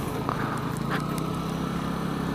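125cc scooter engine running steadily while riding, with a low, even hum over wind and road noise.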